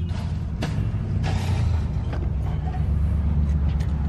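A car's door lock being pushed by hand, a single sharp click about half a second in, over a steady low rumble.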